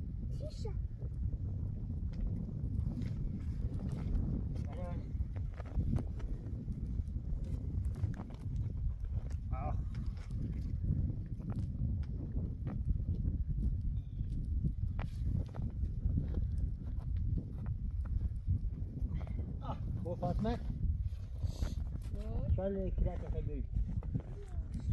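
Wind rumbling steadily on the microphone in falling snow, with brief voices and calls breaking through now and then, clustered near the end.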